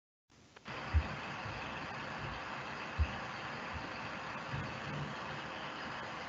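An unmuted video-call microphone cuts in abruptly after dead silence, about half a second in, carrying a steady hiss-and-hum background noise. Two dull low thumps come about a second in and at three seconds.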